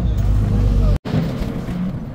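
Bus engine and road noise as heard from inside the passenger cabin, a steady low rumble, broken by a brief dropout to silence about a second in.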